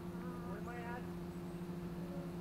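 A steady low hum with two constant tones throughout, and a person's voice briefly, lasting under a second, starting just after the beginning.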